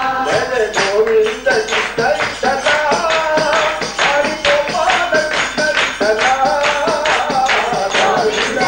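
A Hindu devotional bhajan: a voice singing a melodic line over a fast, even percussion beat.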